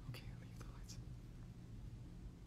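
Faint whispering from a young man, two or three short breathy, unvoiced wisps, with a low steady hum beneath.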